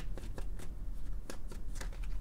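A tarot deck being shuffled by hand: a string of irregular light card snaps and flicks.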